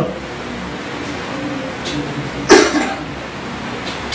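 A man coughs once, short and sharp, about halfway through.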